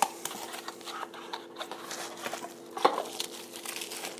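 Bubble wrap crinkling and cardboard rustling as a wrapped lithium-polymer drone battery is pulled out of its small box: a run of light crackles and scrapes.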